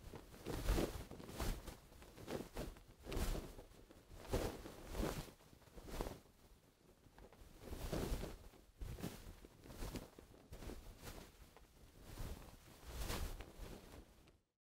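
Gentle cloth-movement Foley: soft fabric rustles and swishes of light clothing being handled, in a string of short, irregular strokes. The sound is generated by Krotos Reformer Pro with the Clothes & Materials Vol. 2 acrylic and cloth movement libraries, driven live from a microphone.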